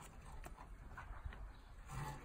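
A child climbing playground bars and a hanging chain ladder: a few faint, scattered clicks and knocks over a low rumble of wind on the microphone.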